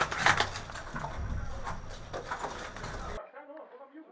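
Scattered knocks and clicks with voices in the background, cutting off abruptly about three seconds in and giving way to a much quieter, muffled track.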